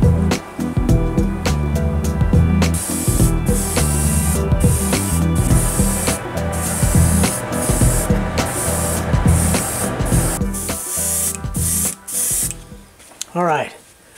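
Airbrush spraying a coat of paint onto a lure in repeated short hissing bursts, starting about three seconds in and stopping near the end. Background music with a steady beat plays throughout.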